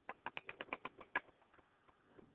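Computer keyboard typing: a quick run of about ten faint key clicks that stops a little over a second in.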